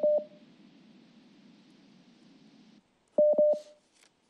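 Telephone line tones on a call carried live: a short beep at the start, faint open-line hiss that cuts off a little before three seconds, then three quick beeps at the same pitch. The caller's connection is dropping, cutting in and out.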